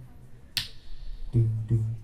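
A single sharp finger snap about half a second in, then two short low notes near the end, part of a live music performance.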